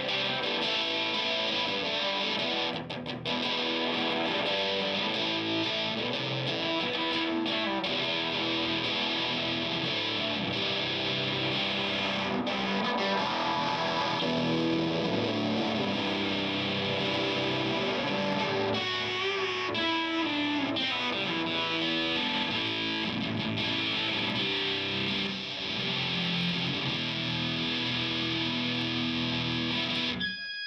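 Overdriven electric guitar played through an Electronic Audio Experiments Longsword overdrive pedal, with its tone shifting as the pedal's knobs are turned during the playing.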